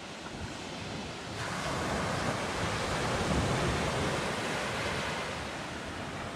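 Waves breaking on a shingle beach, a steady wash of surf that swells about a second and a half in.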